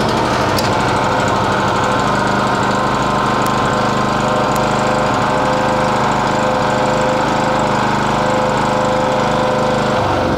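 Tigmax TH2900DX portable generator's GX160-type single-cylinder four-stroke gasoline engine running steadily just after a recoil pull-start. The generator is producing no electrical output: its voltmeter does not move.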